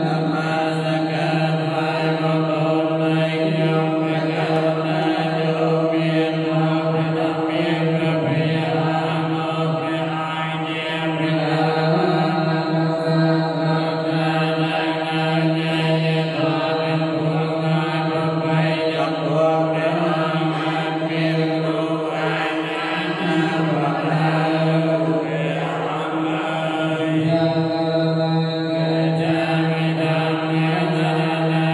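Buddhist monks chanting in unison, a steady recitation held on a near-constant low pitch without a break.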